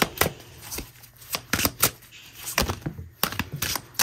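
A deck of oracle cards being shuffled and handled by hand: about a dozen sharp, irregular clicks and snaps of card edges.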